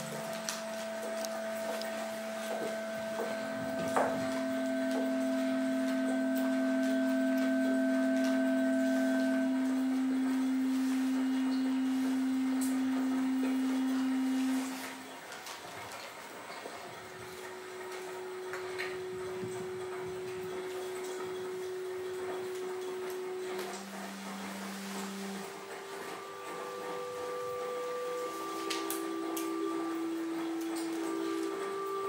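Pure, steady tones held for several seconds each at different pitches and overlapping, a low one with higher ones above it that stop together about halfway through, followed by a set of shorter tones at new pitches that come in one after another. A few faint clicks sound in between.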